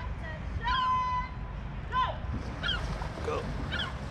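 Wind rumbling on the microphone, with short bird calls repeating about once a second. A distant voice gives one long drawn-out shout about a second in.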